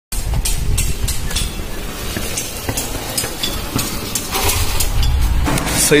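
Yamaha MT-15's single-cylinder engine being bump-started by pushing, giving irregular pops and sputters over a low rumble; its battery is flat after about three months unused.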